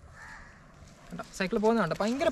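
A faint, brief bird call near the start, then a man's voice speaking a word about a second in.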